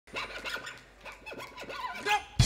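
Fiddle played quietly with scratchy bow strokes and sliding notes whose pitch dips and climbs again.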